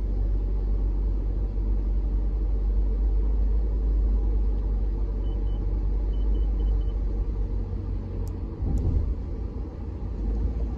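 Steady low rumble of a car's cabin while driving on a wet road. About halfway through come about six short, high beeps, and near the end two brief clicks.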